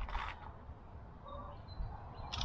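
Quiet outdoor background with faint, thin bird calls, and a brief soft noise right at the start.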